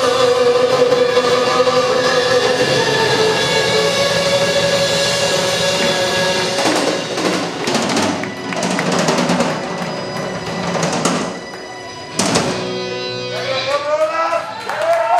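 Live rock band with drum kit, electric guitars and keyboard: a long held note rings over the band, then from about six and a half seconds in the drums take over with cymbal crashes and fills, with a last sharp hit about twelve seconds in as the song ends.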